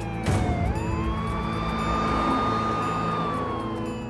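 Police car siren wailing: its pitch sweeps up about half a second in, holds high, then starts to fall near the end, with a rushing noise as it rises. Background music runs underneath.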